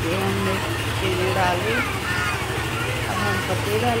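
Indistinct voices talking over a steady low hum and hiss.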